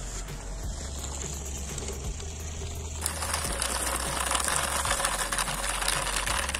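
Small DC motor of a homemade toy tractor whirring steadily through its drive as the tractor crawls across sand, with a hissing noise that grows louder about three seconds in.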